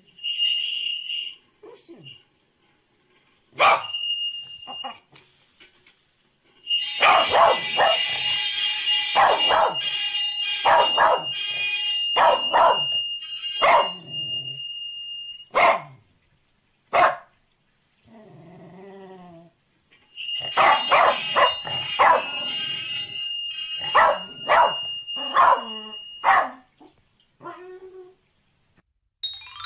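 Corgi barking in two long runs of sharp, rapid barks with a pause between them, and a few single barks before. A high, steady ringing tone sounds along with the barking.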